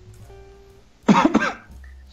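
A man coughs once, a short loud burst about a second in, over faint background music.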